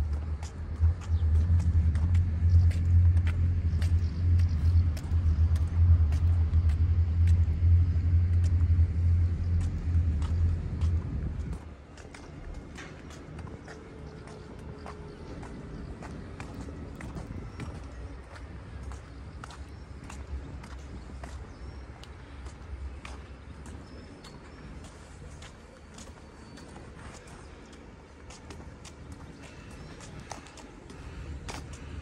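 A loud, low rumble that cuts off suddenly about eleven seconds in, leaving a quieter background with scattered light ticks.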